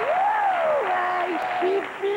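Live studio audience applauding, the clapping fading off, while a performer's drawn-out voice rises and then falls in pitch over it.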